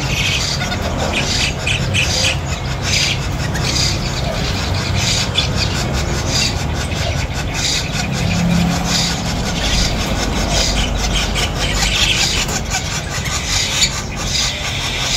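Caged birds calling: repeated short, high, raspy squeals and chirps over a steady low hum.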